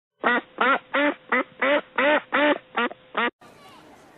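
A duck quacking nine times in quick succession, about three quacks a second. It cuts off suddenly a little after three seconds, leaving the low murmur of a crowd outdoors.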